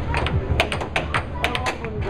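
Air hockey puck clacking sharply against mallets and the table rails in fast, irregular play, several hits a second, over the steady low hum of the table's air blower.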